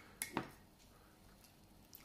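Two light clicks close together, as a small paint pot is handled on the table, then faint room tone.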